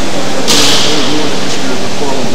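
Loud, steady noise of a machine-building workshop floor with voices faintly under it; about half a second in, a sudden short high hiss.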